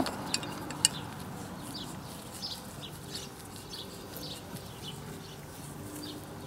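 Two light metallic clicks as a refrigerant hose fitting is fitted onto a brass can tapper, then a faint background with scattered bird calls.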